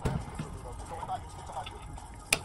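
Faint handling noise: light metal scrapes and a few small clicks as the armature of a Yamaha G29's 48-volt Hitachi motor is worked down into its housing, past brushes held back by temporary clips.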